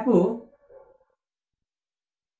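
A man's voice finishing a spoken word in the first half second, with a faint trailing sound, then silence.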